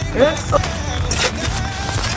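Shovel blades digging into soil, a few short crunching scrapes, the loudest a little over a second in.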